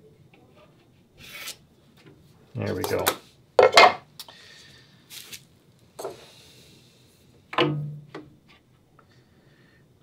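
Wooden cap-rail stock and hand tools being handled on a wooden workbench: a few separate knocks and clunks, the sharpest just under four seconds in, with some brief rubbing and sliding of wood and metal.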